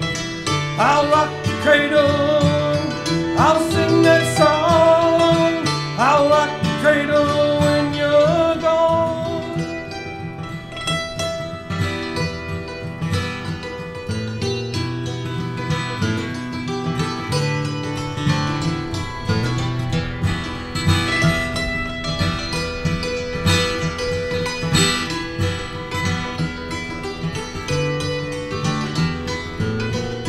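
Hammered dulcimer and acoustic guitar playing an old-time folk tune together, the dulcimer's struck strings carrying the melody over the guitar's strummed accompaniment.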